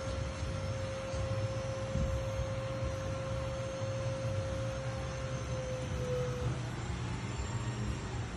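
Hydraulic pump of a tilt boat trailer running with a steady whine as it tilts a boat hull up, over a low hum. The whine sags slightly in pitch and stops about six and a half seconds in.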